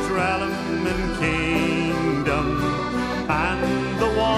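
Irish folk band playing an instrumental break in a sea ballad, with no singing: plucked or strummed strings under a wavering melody line.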